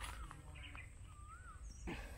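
Quiet outdoor background with a faint bird call: short whistled notes that waver up and down in pitch, twice. A light click near the end.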